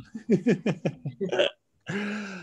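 A man laughing: a quick run of about eight short "ha" pulses over a second and a half, which then stops.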